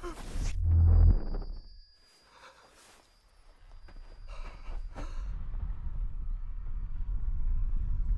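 Film sound effects of an atomic bomb blast: a deep rumble in the first second, then a sudden hush with a faint high ringing tone, then a low rumble that builds steadily toward the end as the blast approaches.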